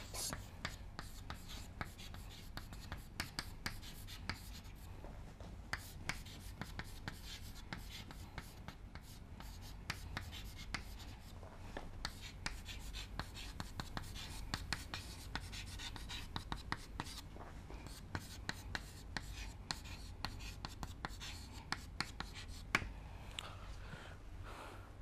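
Chalk writing on a chalkboard: a long run of short taps and scratches as the letters are written out, over a low steady hum.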